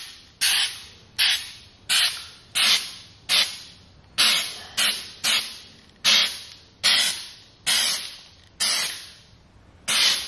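Aerosol can of Krylon True Seal rubberized sealant spraying in short, repeated spurts, about one every three-quarters of a second. Each spurt starts sharply as the nozzle is pressed and hisses briefly before dying away.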